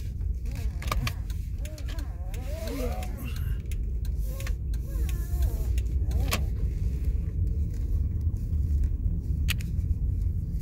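Car interior while driving: a steady low rumble of engine and tyres on the road, growing a little louder from about halfway through as the car gathers speed. A few sharp clicks are heard along the way.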